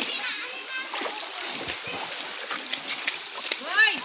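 Water splashing and sloshing with voices over it, and a high, rising-then-falling voice call just before the end.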